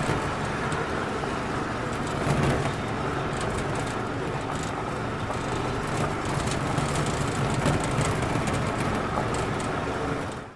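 A crashed drone lying upside down with its motors and propellers still spinning, running at a steady whine.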